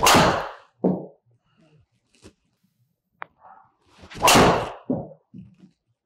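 Two Tour Edge C521 driver shots: each a sharp crack of the clubface striking the golf ball, followed about a second later by a duller thud as the ball hits the simulator's impact screen.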